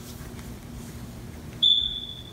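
A single high-pitched electronic beep on one steady pitch, starting near the end and lasting just under a second.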